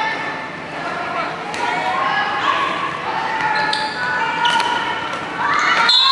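Dodgeballs bouncing and thudding on a sports-hall wooden floor amid players' calls, echoing in the large hall, with sharper shouts near the end.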